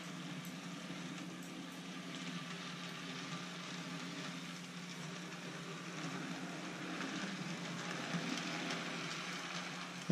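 Model train running on a small oval of track: a steady low hum with the rolling hiss of wheels on rails, growing slightly louder as the locomotive comes round toward the end. The locomotive is an Athearn Roundhouse diesel.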